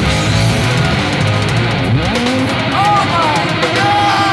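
Live rock band playing loudly, electric guitar to the fore, with notes sliding up and down in pitch about halfway through and again near the end.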